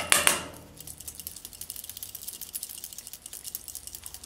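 A few light metallic clinks, then a fast, faint run of ticking and scraping: a drill bit worked by hand to chip plastic from the inside wall of a Bic lighter.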